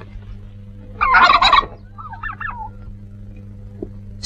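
Domestic turkey gobbling: a loud, rapid warbling gobble about a second in, then a shorter, quieter one, over a faint steady low hum.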